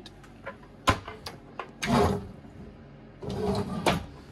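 Small wooden locker door under a boat's helm seat being handled: a sharp click from its catch about a second in, a couple of lighter ticks, then two longer scuffs as the door and seat are moved.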